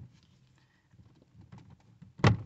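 Faint, scattered light taps and clicks of a plastic trim pry tool being worked in under the edge of a car door's window-switch panel.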